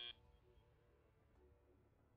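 Near silence: a high steady tone cuts off right at the start, leaving only faint room tone.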